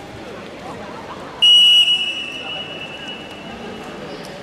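Referee's whistle blown once about one and a half seconds in to start the wrestling bout: a loud, steady, high blast that eases into a longer, softer tail.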